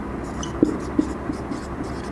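Marker pen writing on a whiteboard: scratchy strokes with a couple of short taps as the tip meets the board.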